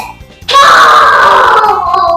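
A young girl's single long scream, starting about half a second in and sliding slowly down in pitch: her answer of 'false' in a true-or-false game. Background music with a steady beat runs underneath.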